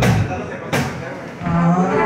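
Live acoustic guitar strummed twice, the second strum under a second in, with a low, steady held tone under the strums that drops out briefly and comes back near the end.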